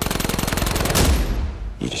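A rapid burst of automatic gunfire starting abruptly and running for about a second and a half, with a man's voice beginning near the end.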